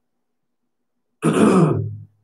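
Silence, then a man clears his throat once, loudly, starting a little over a second in.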